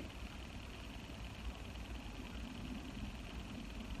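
Beer running from a keg tap into a pint glass: a faint, steady flow with no distinct events.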